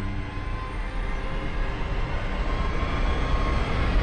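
A low, rumbling trailer sound effect that swells steadily louder, like a large craft passing overhead, as held music tones fade out at the start.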